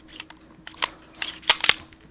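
About half a dozen sharp metallic clicks and clacks from a 1911 .45 ACP pistol being worked by hand, its slide being pulled back and released while it fails to stay locked open. The loudest clicks come close together near the end.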